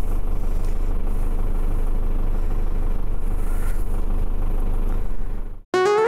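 Snow groomer's diesel engine idling steadily, deep in pitch. It cuts off abruptly near the end, and a music jingle starts.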